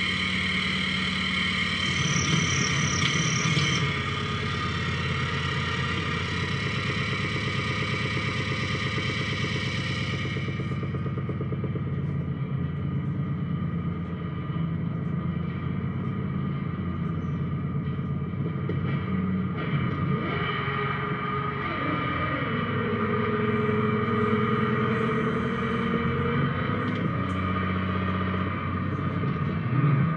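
Live electronic noise improvisation from small tabletop electronic devices patched with cables: a dense, steady drone of many held tones. About ten seconds in the upper hiss drops away, and from about twenty seconds a lower tone slides and then holds.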